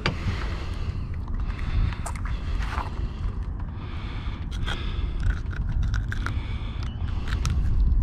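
Wind rumbling on the microphone, with scattered light clicks and scrapes of pliers working a hook out of a small jack's mouth.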